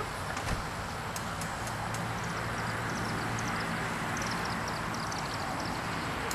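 Steady outdoor background: an even hiss with a low hum that swells slightly in the middle, and a quick run of faint high chirps partway through.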